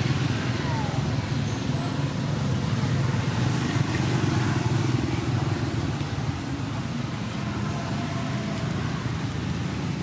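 Steady low outdoor rumble with no distinct events, with faint voices in the background.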